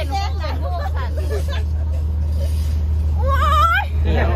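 Women's voices chatting, with a high-pitched exclamation near the end, over a steady low hum.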